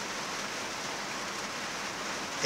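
Steady, even hiss of background noise with no distinct strokes or knocks.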